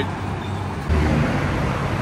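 Road traffic running past, a steady low rumble of engines and tyres that gets louder about a second in as a vehicle goes by.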